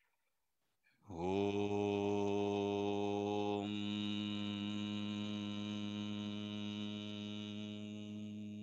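A man chanting one long, low Om: the open vowel starts about a second in, then closes into a steady humming 'mmm' a little before halfway, which is held on.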